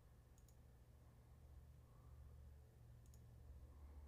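Near silence over a low hum, broken by two pairs of faint computer mouse clicks, one shortly after the start and one about three seconds in.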